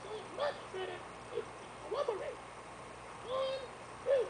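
Cartoon frog voices from a children's TV animation, played through computer speakers: a string of short croaking calls, each note rising and falling, with a longer one near the end.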